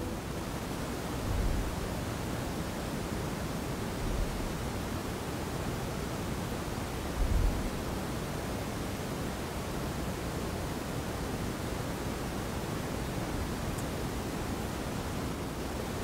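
Steady, even hiss of room tone and recording noise in a quiet church, with three soft low thumps in the first half.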